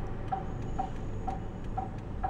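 A car's turn-signal indicator ticking steadily about twice a second, each tick a short, clear blip, over the low, steady rumble of the car.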